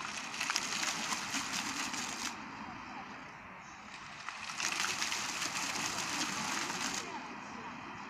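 Illuminated fountain jets spraying up and splashing down in two spells of about two and a half seconds each. The first comes at the start and the second begins a little past the middle, with a quieter lull between.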